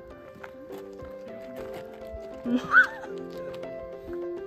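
Background music with a melody of held notes that step from pitch to pitch. About three seconds in, a single short high cry rises and falls over the music.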